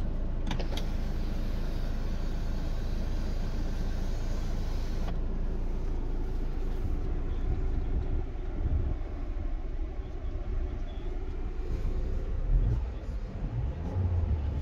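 Steady low rumble of a Mercedes-Benz E250 CGI's 2.0-litre turbo engine idling with the car at a standstill, heard inside the cabin. A hiss over it cuts off abruptly about five seconds in.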